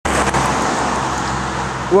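Highway traffic noise, a vehicle passing close by on the road, its tyre and engine noise easing off slightly near the end.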